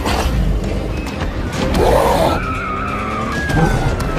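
Film-style action sound mix: a car's tyres skidding and squealing in a street chase, over music. A short roar-like burst comes about two seconds in, and a long falling tone begins near the end.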